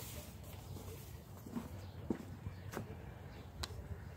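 Footsteps on straw bedding with a few scattered soft knocks in the second half, over a steady low rumble.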